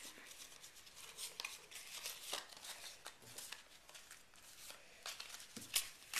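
Football trading cards being handled and stacked into a pile: faint, scattered rustles and small clicks, with some crinkling.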